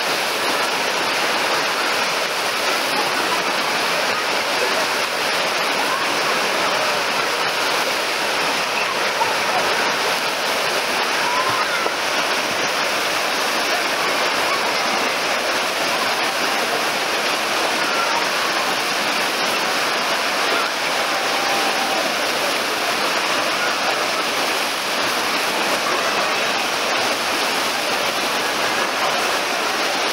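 Artificial waves in a wave pool churning and breaking, a steady loud rush of water, with bathers' voices mixed in.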